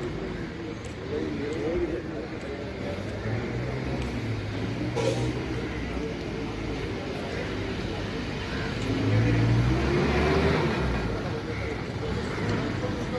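A motor vehicle's engine running and speeding up, loudest and rising in pitch around nine to ten seconds in, over a steady background of traffic and distant voices.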